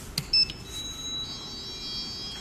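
A click as the lift's call button is pressed, followed about half a second in by high electronic chime tones from the lift's signalling, several pitches held and ringing on.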